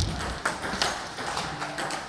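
Table tennis ball clicking off bats and table in a serve-and-return drill, a string of sharp knocks about three a second, with a heavy thump right at the start.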